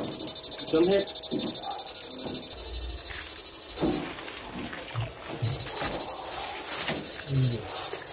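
16-FET, two-transformer electronic fish shocker running on its low-frequency setting, giving a high-pitched electronic whine with a fast pulsing buzz; it cuts out about four seconds in and comes back on about a second and a half later.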